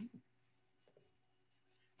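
Near silence: a pause in speech, with only the tail of a spoken word at the very start.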